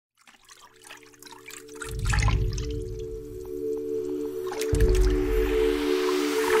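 Intro music fading in: a held chord of several steady tones, with a deep bass hit about two seconds in and another near the end, over trickling, dripping water sound effects.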